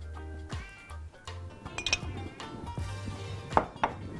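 Background music with a few sharp clinks from a glass oil jar being handled and set down on the counter. The sharpest clink comes near the end.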